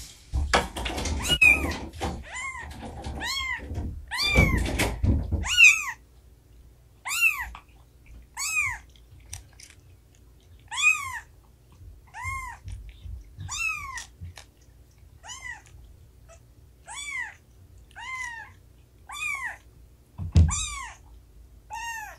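A young kitten mewing over and over, short rising-and-falling cries about once every second and a half. Heavy footsteps and knocks sound under the first five seconds, and there is a single thump near the end.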